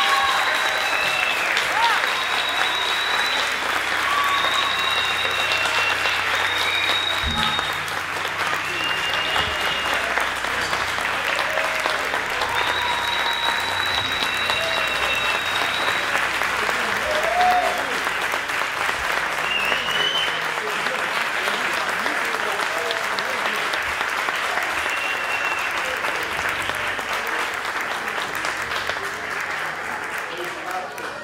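Audience applauding steadily, with scattered high calls and whoops over the clapping, growing a little quieter toward the end.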